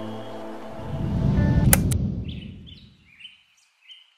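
Soft background music ends, then a low whoosh swells up and dies away, with two sharp clicks near its peak: a transition sound effect. After it, birds chirp a few times.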